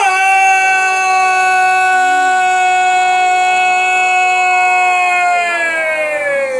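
A border guard's long, drawn-out shouted parade command: one loud, high note held steady for about six seconds that sinks in pitch as the breath runs out.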